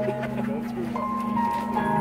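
Marching band playing the slow opening of its field show: soft held chords, with higher notes coming in about a second in.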